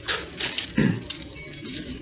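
Leaf wrapping and plastic gloves rustling and crackling as a string-tied, leaf-wrapped piece of pork is peeled open by hand. A brief falling vocal hum comes a little under a second in.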